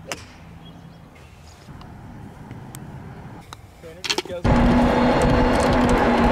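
A golf club strikes a ball with one sharp click right at the start, followed by a few seconds of quiet outdoor ambience. About four and a half seconds in, a loud, steady noise with a low hum cuts in suddenly and holds.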